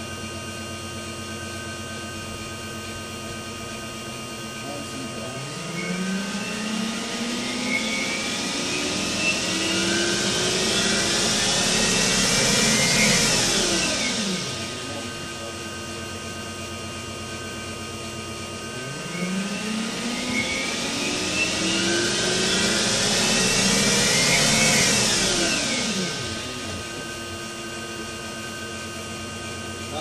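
Electric drivetrain and ZF 5HP24 automatic gearbox of an EV-converted BMW 840Ci, run up twice: each time a whine climbs steadily in pitch and loudness for several seconds as the wheels speed up, then falls away quickly as the foot brake stops the car.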